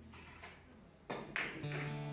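Sharp clicks of carom billiard balls striking one another during a shot, the loudest two a little after a second in. Background guitar music comes back in near the end.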